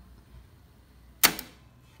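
A single sharp click about a second and a quarter in, dying away at once against a near-silent room.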